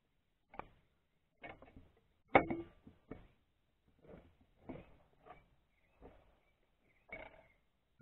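Scattered light knocks and clunks as the outboard's lower unit gear case is handled and brought up under the motor's midsection, the loudest a sharp knock with a short ring about two and a half seconds in.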